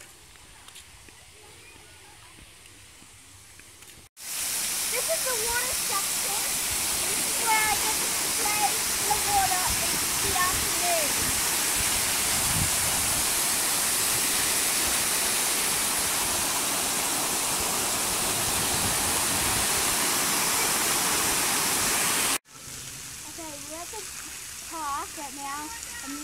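Water park play tower spraying and pouring water: a loud, steady rushing hiss that starts suddenly about four seconds in and stops suddenly near the end, with a few short shouts or calls heard through it early on.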